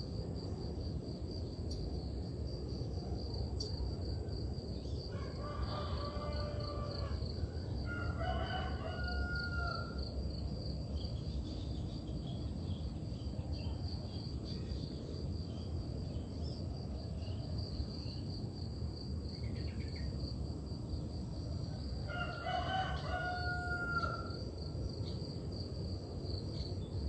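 Rooster crowing three times, each crow about two seconds long: twice a few seconds in, then again near the end. A steady high insect drone runs underneath.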